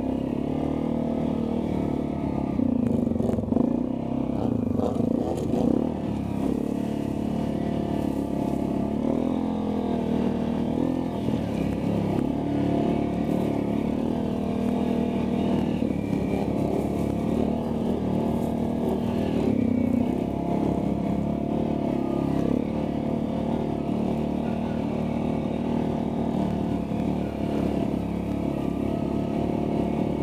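ATV engine running continuously while riding, its pitch rising and falling with the throttle several times.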